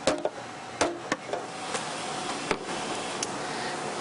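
A few sharp clicks and knocks, about four in four seconds, from a glass cup and a steel milk pitcher being handled on a café counter, over a steady background hum.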